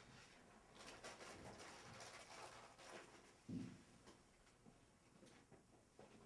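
Near silence: room tone with a few faint clicks and rustles, and one brief low thump about three and a half seconds in.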